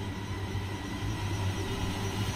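A steady low rumbling drone with a faint thin high tone above it: the dark ambient sound design of a music video's closing scene.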